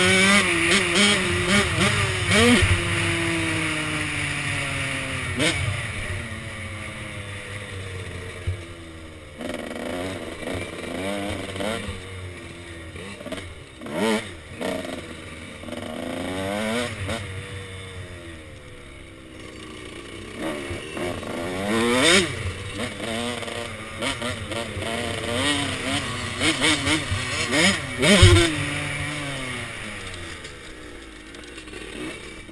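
KTM SX 105 two-stroke dirt bike engine heard from the rider's helmet, revving hard through the gears: its pitch climbs again and again, drops when the throttle is shut, and rises with sharp throttle blips.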